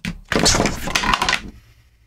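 Clear acrylic printer-frame panels clattering and knocking against each other as they are handled and fitted together: a dense run of hard clicks lasting about a second.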